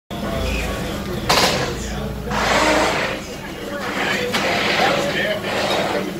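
Voices talking in a busy room, with a sharp clack about a second in and a short hiss a second later.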